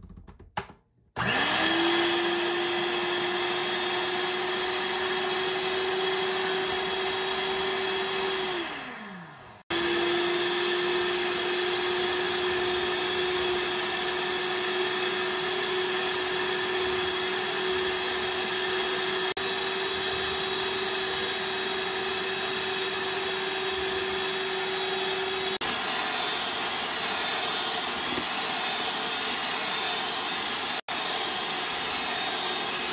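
Electric stand mixer's motor whirring as its twin beaters mix flour, coconut and water into a thick cake batter. It spins up with a rising whine about a second in, winds down and stops around nine seconds in, then starts again straight away and runs steadily.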